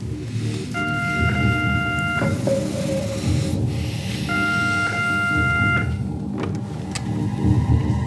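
Background music with a telephone ringing twice; each ring is a steady tone about a second and a half long. A couple of sharp clicks follow.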